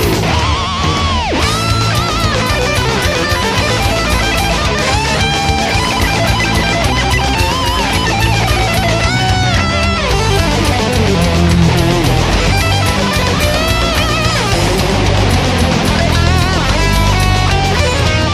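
Heavy metal instrumental passage: distorted electric guitars and drums, with a lead guitar playing notes that bend and slide up and down in pitch.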